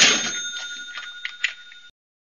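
Cash register "cha-ching" sound effect: a sharp clatter and a bell ringing, with a few clicks, cutting off suddenly near the end.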